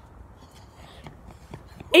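Faint, steady background noise with no distinct event, then a boy's voice starts talking near the end.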